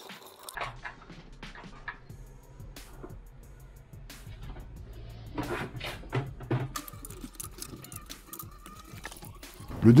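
Soft background music with steady low tones, under scattered light clicks and knocks of hand work.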